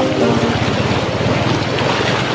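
Floodwater rushing over a submerged road crossing and splashing up around a motorcycle riding through it, with wind buffeting the microphone.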